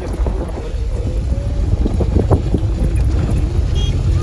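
Vehicle driving over a rough dirt track: a steady low rumble with wind on the microphone and a few knocks about two seconds in.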